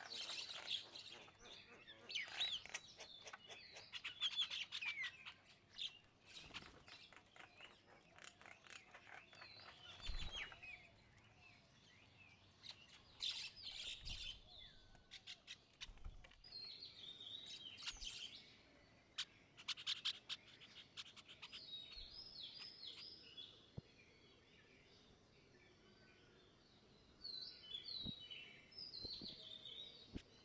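Small songbirds chirping and chattering in quick runs of calls, busiest at the start and again in the middle and near the end, with a few low thumps.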